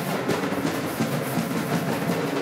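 A school concert band playing: saxophones, clarinets, trumpets and sousaphones over a steady drum beat, in a school gym.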